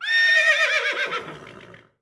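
A horse whinnying once: a high, quavering neigh that starts suddenly and fades away over about a second and a half.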